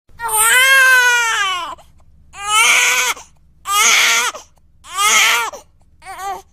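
A high, childlike voice crying in four wails: a long first wail, then three shorter ones, each sliding down in pitch at its end.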